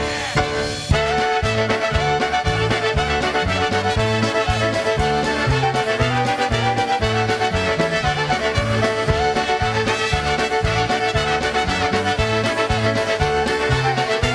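Polka band playing an up-tempo fiddle tune, with the fiddle leading over accordion, horns and a steady bass beat. The full band comes in about a second in.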